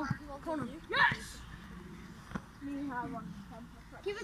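Children's voices calling out across an outdoor pitch, with one short rising shout about a second in and quieter talk near the end.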